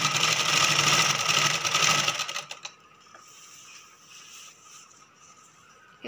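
Sewing machine running fast with a rapid, even stitching rhythm as it sews a fall onto a saree edge, then winding down and stopping a little over two seconds in.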